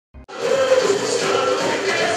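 Samba school parade music: voices singing over a drum section, cutting in sharply a moment after the start.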